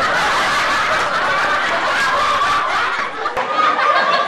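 A group of people laughing together, a steady, dense wash of laughter with no single voice standing out.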